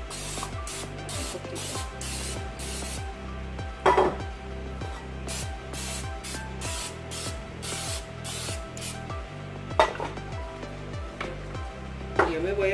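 Aerosol nonstick cooking spray hissing in many short bursts into a metal muffin pan, greasing the cups so the batter won't stick. Two sharp knocks come about four seconds in and near ten seconds, over steady background music.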